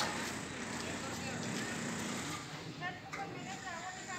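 Indistinct voices in the background over outdoor noise, with a steady low hum that fades out about halfway through.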